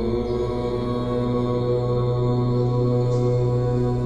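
Meditation music: a deep, steady, chant-like drone of held tones that swells in at the very start and then holds level.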